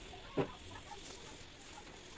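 A single short bird call about half a second in, over faint background noise.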